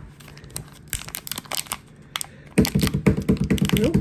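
Small foil blind-bag pouch crinkling and crackling in the fingers as it is pulled at and twisted in an attempt to tear it open. The pouch resists tearing. The crackles are sparse at first, then turn loud and dense about two and a half seconds in.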